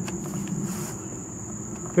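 Steady high-pitched insect trill, like crickets, over a low, even background hum, with a brief faint hiss about two-thirds of a second in.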